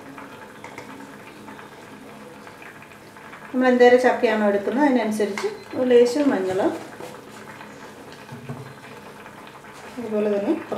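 Tender jackfruit pieces simmering in water in a pot, a low steady bubbling, with a voice speaking for a few seconds in the middle.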